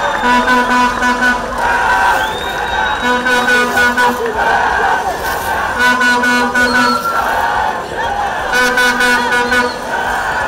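A group of voices chanting and shouting in celebration, a held note coming back about every three seconds, with cries in between.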